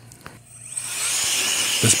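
Handheld cordless air blower switched on: it whines up to speed about half a second in, then runs steadily with a loud high rush of air.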